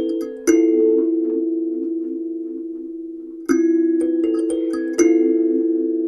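A Sansula, a kalimba whose metal tines sit on a drum-skin frame, is thumb-plucked. One note about half a second in rings out long and slowly fades. Near the end comes a quick run of several notes, which ring on together.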